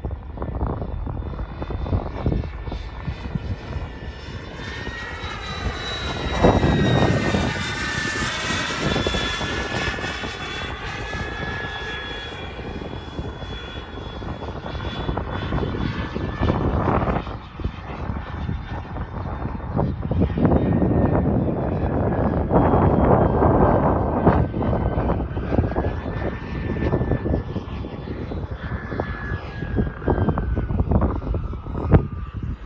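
Kingtech K-102G4 model jet turbine in an RC Cougar jet flying by, a steady high whine over a rushing jet blast that swells and fades as the model passes, loudest about six seconds in and again around twenty to twenty-five seconds.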